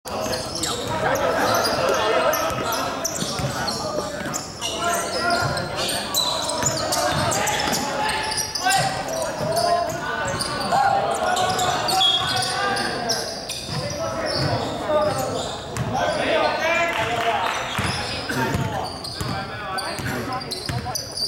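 Basketball bouncing on a hardwood gym floor, repeated thuds that echo around a large hall, amid players' voices.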